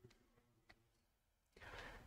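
Near silence: room tone, with a faint click a little under a second in and a faint rustle near the end.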